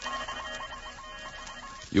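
Old-time radio sound effect of a space transmitter with its scrambler circuit switched on: an electronic beeping warble repeating about five times a second over steady high tones.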